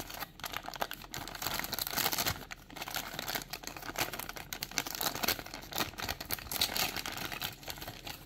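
Clear plastic packaging bag crinkling as hands work a small die-cast toy truck out of it, a dense run of fine crackles throughout.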